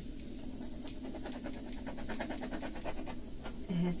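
Handheld torch flame running with a steady hiss and a faint high whine, with fine fast crackling ticks in the middle, as it is played over wet acrylic pour paint.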